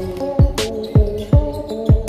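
Background music with a steady beat: deep kick drums that drop sharply in pitch, sharp high percussion hits and a sustained synth chord.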